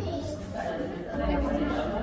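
Background chatter: several people talking at once, no clear words. A low rumble comes in about a second in.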